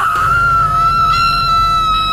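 A woman screaming: one long, high scream held at a nearly steady pitch.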